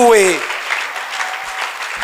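A congregation applauding: a man's voice trails off about half a second in, then steady clapping from the seated audience fills the rest.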